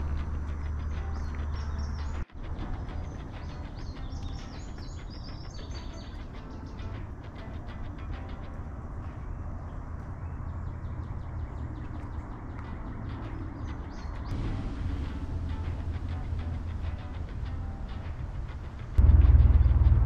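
Wild birds chirping and calling in woodland, many short irregular chirps for most of the clip over a low steady background. A loud low rumble comes in near the end.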